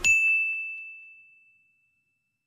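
A single clear, bell-like ding that rings and fades away over about a second and a half.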